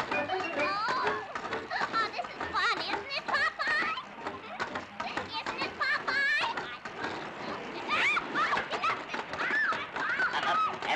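Cartoon character voices giving wordless yelps, squeals and exclamations, with other voices in the background.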